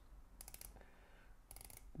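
The 60-click unidirectional bezel of a Citizen Promaster NY0040 dive watch being turned by hand: two quick runs of faint ratcheting clicks, about half a second in and again near the end.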